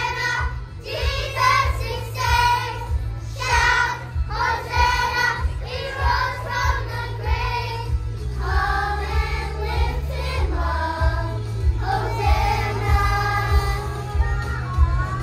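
Children's choir singing a worship song together over recorded music with a steady, heavy bass.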